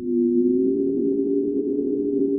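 A sustained electronic drone of two low, steady tones with a faint higher tone above them. It swells up in the first moment, then holds unchanged.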